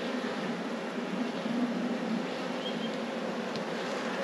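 Many honeybees humming around a frame lifted from an open hive: a steady drone that wavers slightly in pitch.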